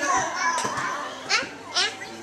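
Young children's voices, excited chatter with two short, high squeals in the second half.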